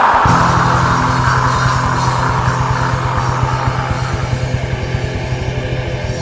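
Black metal song: distorted guitars hold a sustained chord over very fast, steady drumming, with a crash that fades over the first few seconds.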